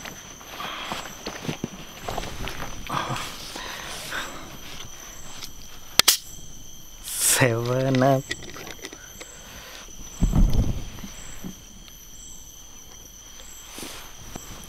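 Footsteps and rustling in leaf litter for the first six seconds, with crickets chirping steadily and faintly throughout. A sharp click comes about six seconds in, then a brief sound from a man's voice, and a low thump a few seconds later.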